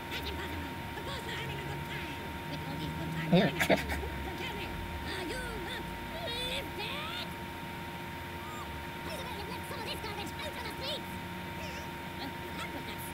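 Voices from an animated TV episode's soundtrack, with a steady faint high tone underneath. A couple of sharp, loud hits come about three and a half seconds in.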